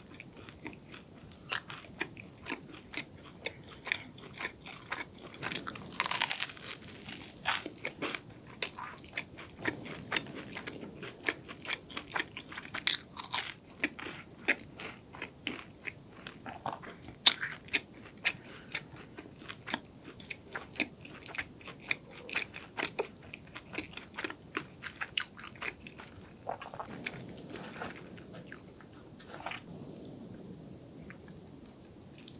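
Close-miked eating of a flaky mini croissant: a steady run of crisp pastry crackles and chewing, with several louder crunchy bites scattered through.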